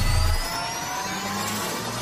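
Cinematic riser sound effect for a motion-graphics transition: a noisy whooshing wash with several tones gliding slowly upward, while the low rumble of an earlier hit dies away in the first half second.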